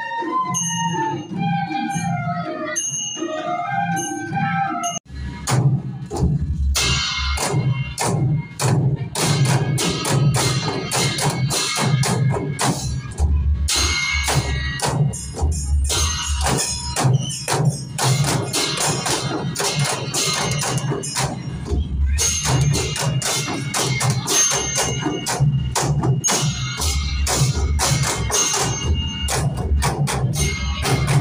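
A group of bamboo flutes (bansuri) playing a wavering melody together; about five seconds in, a sudden cut to a group of Newari dhime drums, double-headed barrel drums, beaten together in a fast, steady rhythm.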